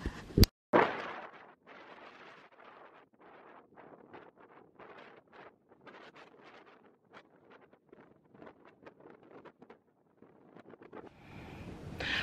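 Wind gusting in irregular short bursts across the microphone outdoors, after a single sharp click near the start.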